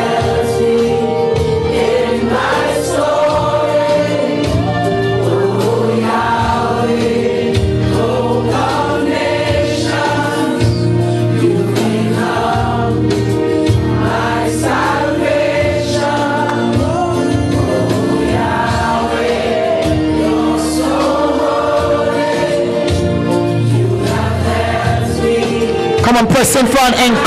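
Gospel worship song: many voices singing together over instrumental backing, with held chords and a steady bass line throughout.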